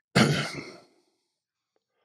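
A man's breathy sigh, about a second long, starting loud and fading out.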